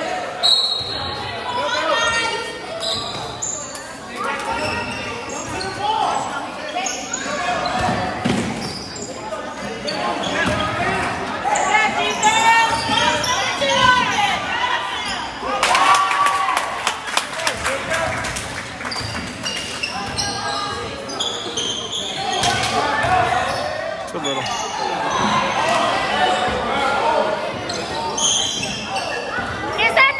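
Basketball bouncing on a hardwood gym floor during play, with voices calling out, all echoing in a large gym.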